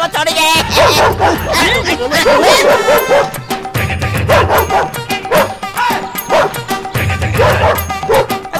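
A dog barking repeatedly over background music with a recurring low beat.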